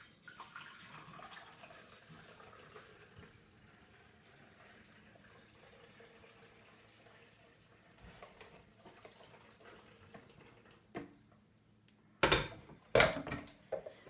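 Water-and-vinegar mixture poured from a glass carafe into a drip coffee maker's water reservoir, a faint steady trickle. Near the end, a few loud knocks as the coffee maker's lid is shut.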